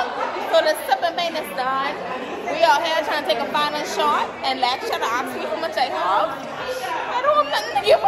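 Women talking and chattering close to the microphone, voices overlapping.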